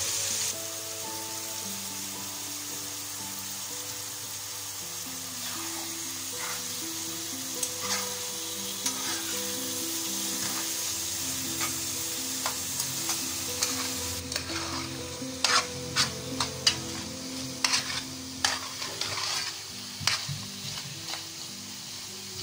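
Liver pieces frying in hot oil in a pan, sizzling steadily, while a metal spoon stirs them with short scraping clicks against the pan that come thick and fast in the second half. This is the searing stage that seals the liver. A soft background melody plays underneath.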